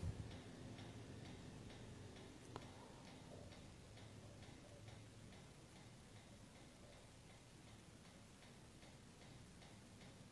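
Near silence: quiet room tone with faint, evenly spaced ticking.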